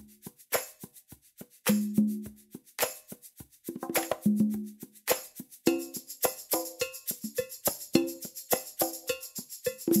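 Pop percussion drum-loop metronome track at 210 beats per minute in 4/4: a fast, even stream of percussion hits. The pattern turns busier about five seconds in.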